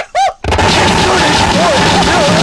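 Japanese harsh noise music: a short pitched vocal yelp, then about half a second in a sudden wall of loud distorted noise with warbling tones running through it.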